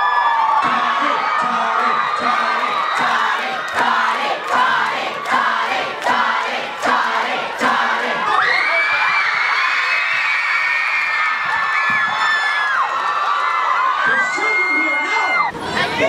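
Live theatre audience cheering and screaming, with long high-pitched shrieks held over the noise, strongest from about halfway, and scattered claps in the first half.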